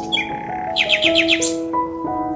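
Soft background music of held notes, with a small bird chirping over it: a short call just after the start, then a quick run of about seven chirps around the middle.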